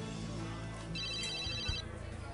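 A mobile phone's electronic ring, a short high trilling tone lasting under a second, starting about a second in, over soft background music.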